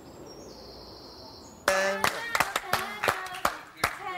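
Faint outdoor background, then about a second and a half in a few people break into irregular clapping, with voices calling out over it.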